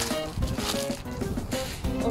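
Background music: a light melody of held notes.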